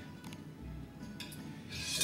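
Soft scraping and sliding of chopped raw tomato topping being tipped off a ceramic dish onto spaghetti in a bowl, over faint background music.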